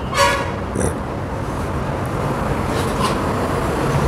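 Steady noise of road traffic growing slowly louder, with a brief horn toot near the start.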